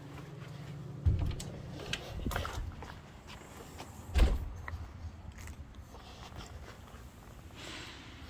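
A storm door being pushed open, then footsteps going out onto the lawn with a few dull thumps, the loudest about four seconds in.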